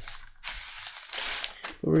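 A rustling, scraping rub of cloth, leather and brown paper, starting about half a second in and lasting about a second, as a stamped leather piece and a cloth-wrapped dye block are handled and slid over a paper sheet.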